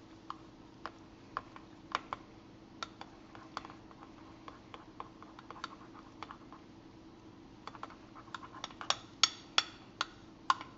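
Metal spoon clinking against the sides of a glass measuring cup while stirring a thin powdered-sugar icing: irregular light taps that come quicker and louder near the end. A faint steady hum runs underneath.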